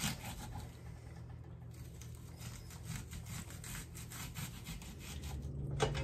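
Chef's knife dicing an onion on a wooden cutting board: a run of light, quick cuts, the blade tapping on the wood again and again.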